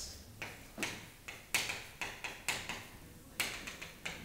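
Chalk writing on a chalkboard: a run of about ten sharp, uneven taps and short scratches as the letters are put down.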